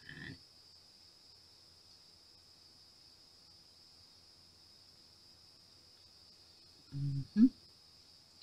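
Near silence with a faint steady high hiss, broken about seven seconds in by a woman's short two-part hum or grunt.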